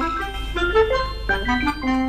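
Children's TV theme tune played on an organ-like keyboard: a bouncy melody of short notes stepping quickly up and down.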